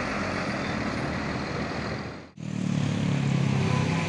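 Hino intercity coach running as it pulls away, mixed with road noise. About two seconds in the sound drops out briefly, and a steady low engine rumble of road traffic follows.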